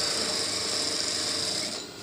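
Industrial sewing machine running a short, steady burst of stitching through kurta fabric, a high whir that stops shortly before the end.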